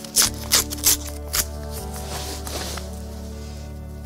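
A seed packet being torn open by hand, with a few short crinkles and rips in the first second and a half, over steady background music.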